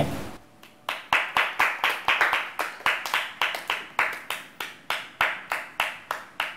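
A small group clapping in a room, sharp, even hand claps at about four a second, starting about a second in and running on until just before the end.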